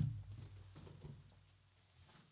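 Near silence: faint room tone with a low hum and a few faint, scattered ticks.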